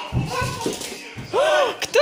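Household voices: a high, drawn-out call, rising and falling, with low thuds in the first half second and a couple of sharp knocks near the end.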